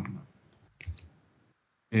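Two faint clicks about a second in, from the laptop's mouse or key as the presentation slide is advanced, in a short hushed pause between words.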